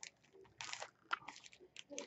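Faint crinkling of a cellophane-wrapped package being handled, in four or five short rustles.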